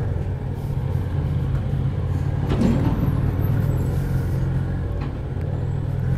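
Motorcycle engine running steadily at low revs, ridden slowly over a rough dirt track.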